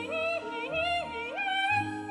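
Operatic soprano singing a leaping phrase over orchestral accompaniment, ending on a held high note.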